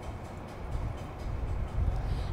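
Low, uneven outdoor rumble with a light hiss above it, growing a little louder near the end.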